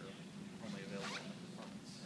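Indistinct voices talking in the background over a steady low hum, with some rustling.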